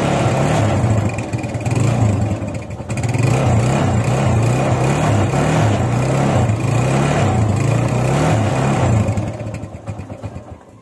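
Kawasaki Barako 175's single-cylinder four-stroke engine running at idle, its speed rising and falling a little. The sound dips in level for a moment early on and fades near the end.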